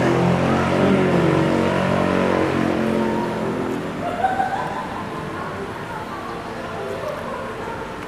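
Road traffic: a passing motor vehicle's engine, its note sliding slowly lower over the first few seconds, then another engine note rising and fading away.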